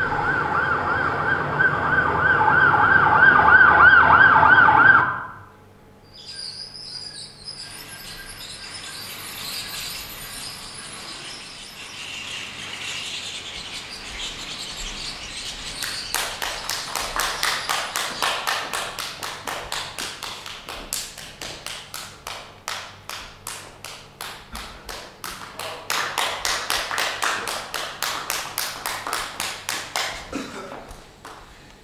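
A loud warbling, siren-like tone for about the first five seconds, which cuts off sharply. Audience applause then builds, and from about halfway it turns into rhythmic clapping in unison, about two claps a second.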